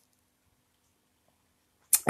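Near silence: a pause in a man's talk, with his voice starting again at the very end.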